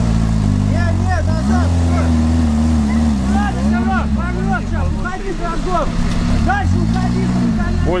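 Off-road buggy's engine revving hard in two long surges as it tries and fails to climb a muddy slope under power.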